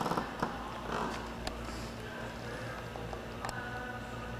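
Indoor background ambience: a steady low hum with faint distant voices and a few light clicks.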